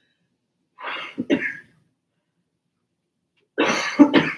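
A person coughing: two fits of two quick coughs each, one about a second in and one near the end.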